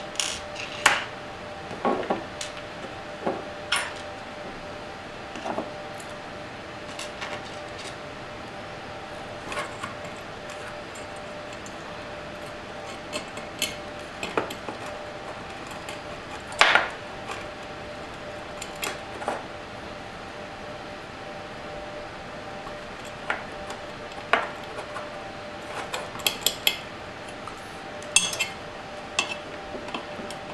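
Small metal parts clinking and knocking as a mains inverter's finned metal casing and its screws are fitted back together by hand: irregular sharp clicks scattered throughout, with a quick run of them near the end.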